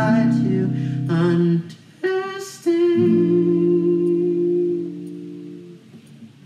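A young man's voice singing over a strummed acoustic guitar. About three seconds in, a chord with a long held note rings out and slowly fades away.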